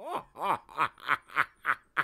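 A man laughing, a steady run of short "ha" bursts about three a second, each falling in pitch.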